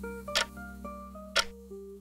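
Countdown clock ticking once a second, two ticks, over light background music of plucked notes.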